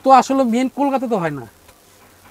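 A man speaking in Bengali for about a second and a half, then a short lull.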